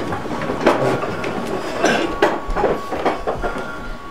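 Classroom chairs and desks being scraped and knocked as a class of children sits down: an irregular clatter of knocks.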